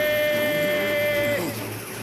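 A voice-acted battle yell: one long, steady shout that bends down in pitch and breaks off about one and a half seconds in.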